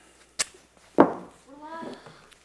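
Title-sequence sound effects: a quick swish, then about a second in a loud, sudden hit that rings out over about half a second.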